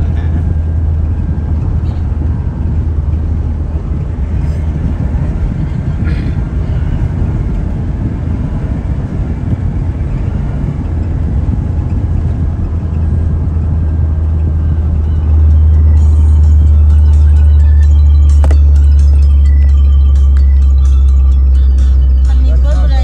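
Low rumble of a car driving on a concrete highway, heard from inside the cabin: steady tyre and engine noise that grows louder and more even about two-thirds of the way through.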